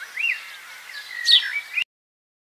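Birds chirping, a string of short whistled notes that sweep up and down, cut off abruptly near the end.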